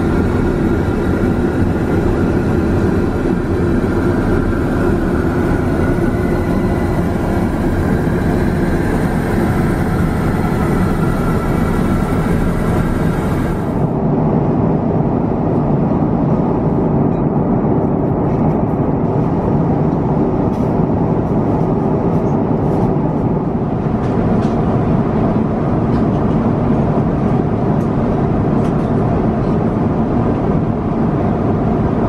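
Steady cabin drone of an Airbus A350-900 in cruise: engine and airflow noise. About 14 seconds in the sound changes suddenly and loses its hiss, and a few faint clicks follow.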